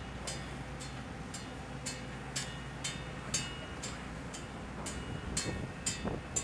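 Steady low hum of shipboard machinery with a sharp, high tick repeating evenly about twice a second.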